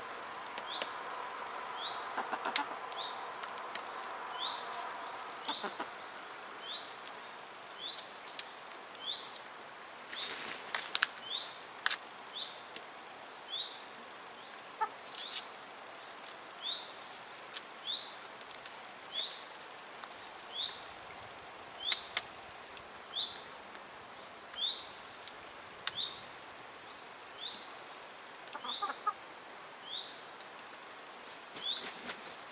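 Hens pecking food off a wooden tray: sharp scattered taps, with a brief wing flutter about ten seconds in, the loudest moment. Throughout, a short high rising chirp repeats about once a second.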